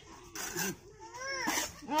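An animal's cries: two short calls, each rising then falling in pitch, in the second half.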